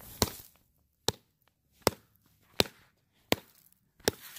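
Hammer striking a tree trunk, five sharp knocks about three-quarters of a second apart.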